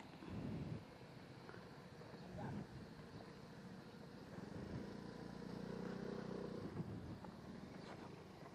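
Yamaha Mio Gear S scooter's engine running faintly in the distance as it is test-ridden. Its steady note comes up more clearly from about halfway through, then fades after a few seconds.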